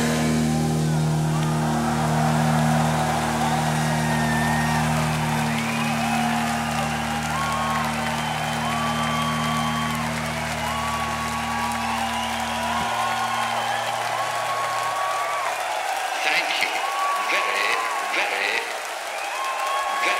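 Concert crowd cheering, whooping and applauding over the band's final held chord. The chord stops abruptly about two-thirds of the way through and rings briefly, leaving the crowd's cheers and whoops.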